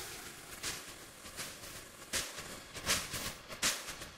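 Null-test residue of a music track: the MP3 copy phase-inverted against the lossless FLAC original, leaving only what the MP3 compression removed. It sounds like a faint, thin hiss of the music, with its beats coming through as short hissy accents about every three-quarters of a second.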